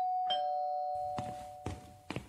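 Two-tone doorbell chime, a higher note followed by a lower one (ding-dong), ringing on and fading over about a second and a half.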